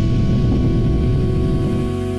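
Rocket-launch rumble sound effect over music, the rumble fading near the end while a sustained chord rings on.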